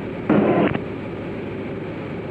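Steady drone of a Diamond DA40's engine and cabin noise, picked up through the headset intercom. About a third of a second in, a half-second burst comes over the radio, a clipped transmission.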